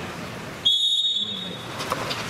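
Referee's whistle blown once, starting suddenly about two-thirds of a second in: one steady, shrill tone held for just under a second, over background crowd chatter.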